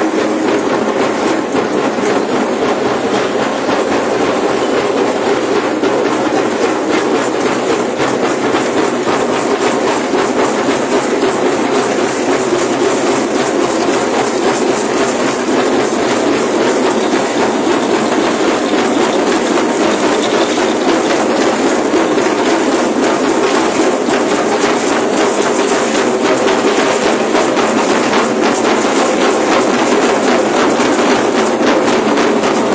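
Dense, continuous rattling from the rattles of a large troupe of Mexican dancers, many rattles shaken at once, loud throughout.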